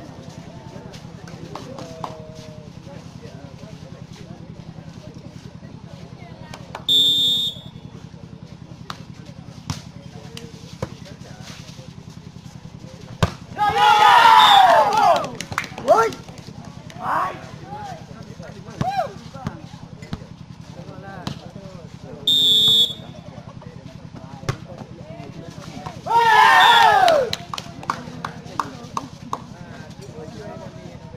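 Amateur volleyball match: a short, high referee's whistle blast twice, sharp smacks of the ball being struck during rallies, and two loud bursts of spectators shouting and cheering, one about halfway through and one near the end, over a steady low hum.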